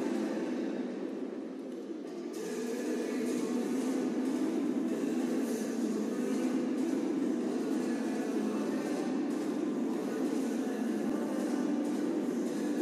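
The program music ends, and about two seconds in audience applause rises and carries on steadily.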